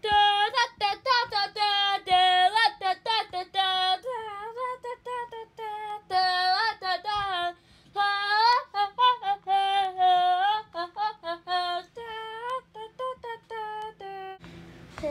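A high-pitched voice singing a quick tune of short notes, with a few longer held notes.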